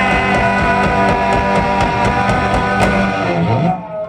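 Punk rock band playing live: electric guitar holding a ringing chord over bass and drums with cymbal hits. The band breaks off suddenly near the end.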